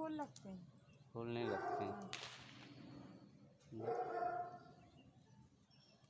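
A dog calling twice, each call drawn out for about a second: once about a second in and again about four seconds in.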